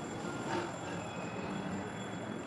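Restaurant room noise: a steady low hum with faint high steady tones, and a brief louder sound about half a second in.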